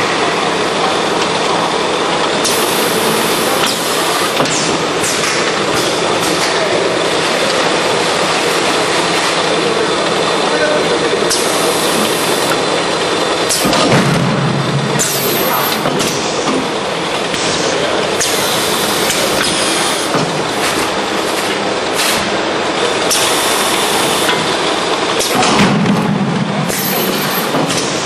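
Drop-type case packing machine for 5-litre oil bottles running: steady machine noise, broken by repeated short hisses and two heavy thumps, one about halfway through and one near the end.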